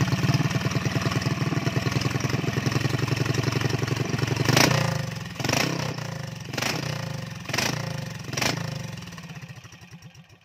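Single-cylinder Honda GX390 engine with a hand-ground camshaft, running on the bench through a bare exhaust pipe. It runs steadily, then about halfway gives a loud bang. Sharp bangs follow about once a second as its running sound fades away.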